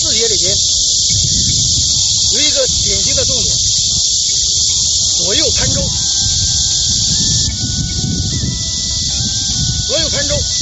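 A loud, steady, high-pitched insect hiss, with a person's voice rising and falling beneath it several times.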